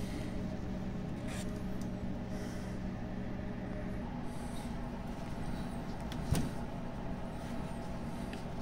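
A steady low hum in the room, with faint soft rustling as plush toys are moved by hand and one short knock about six seconds in.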